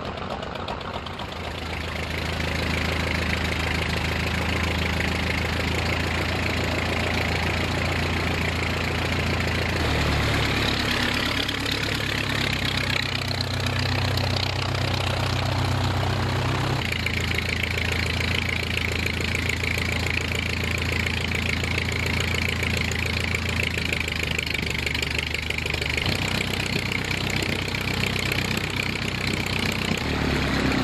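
Piston engine of a vintage single-engined propeller aircraft running at idle on the ground, a steady throb that swells about two seconds in. The engine note shifts abruptly a few times.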